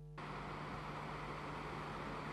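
A faint steady electrical hum, then, a moment in, street traffic noise cuts in suddenly and runs on steadily: city buses driving along a road, with a low hum still underneath.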